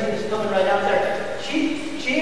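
A man speaking into a handheld microphone, his voice amplified in a school gymnasium.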